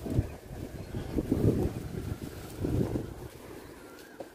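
Wind buffeting the microphone: low, uneven rumbling gusts that swell and fall three or four times.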